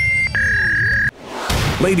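Intro jingle: two steady electronic beep tones, the second lower and longer, over a low pulsing beat, all cutting off suddenly about a second in. Music with a man's announcing voice starts near the end.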